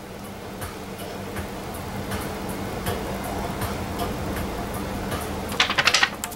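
Steady low hum with a soft hiss from a running HHO electrolysis setup feeding a small oxy-hydrogen flame, growing slightly louder. A quick run of sharp clicks comes near the end.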